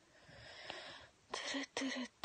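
A woman's long breathy exhale close to a phone microphone, followed about halfway through by short murmured voice sounds as she starts to speak.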